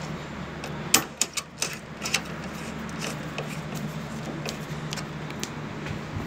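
Sharp metallic clicks and light rattling of a screwdriver and wire terminals being handled at an air-conditioner unit's power terminal block, with a cluster of clicks about a second in and fainter ticks after, over a steady low hum. The wiring is being reconnected with two supply phases swapped to cure a reversed-phase fault.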